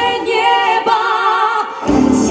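A woman singing a Christian worship song live, holding notes with vibrato, the accompaniment falling away so her voice stands nearly alone; the band comes back in near the end.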